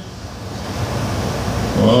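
A steady rushing, wind-like noise that slowly swells over the pause in speech. A man's voice starts near the end.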